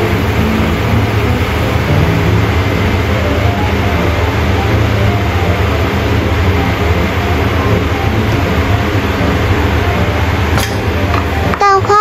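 Tomato egg-drop soup boiling hard in a wok as beaten egg is poured in, a steady bubbling hiss over a constant low rumble.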